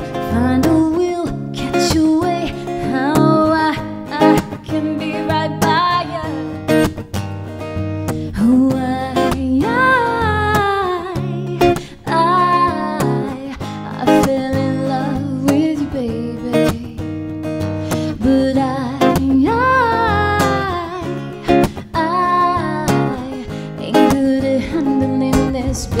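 A woman singing a live acoustic song over a strummed acoustic guitar, with cajon beats keeping a steady rhythm. The vocal line slides and bends in long held notes.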